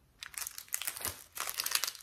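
Clear plastic packs of craft buttons crinkling as they are handled, a quick run of sharp crackles.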